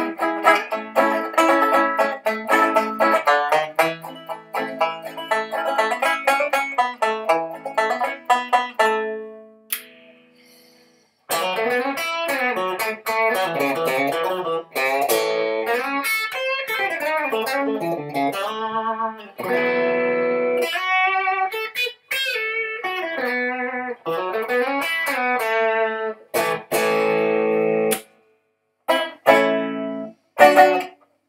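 Electric tenor banjo picked rapidly through a clean amp, the notes ringing out and dying away about nine seconds in. After a short pause the Telecaster neck of the same doubleneck comes in through a Fender Princeton amp, with sustained notes whose pitch bends up and down.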